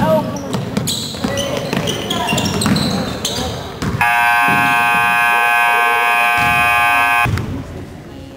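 Basketball bouncing on a gym floor with sneakers squeaking for the first half. About four seconds in, the scoreboard buzzer sounds loudly and steadily for about three seconds, then cuts off, signalling the end of a period.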